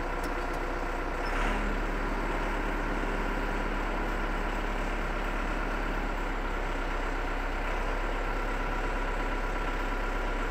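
Tractor engine running steadily at idle, with a brief rise about a second and a half in as the tractor creeps forward onto a wooden block to seat its tire chains.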